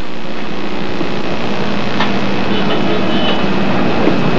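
Steady rushing background noise from wind on an outdoor field microphone, with a faint low hum underneath and a faint click about halfway through.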